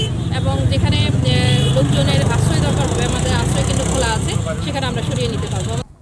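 A woman speaking over a loud, steady low rumble, which cuts off abruptly near the end.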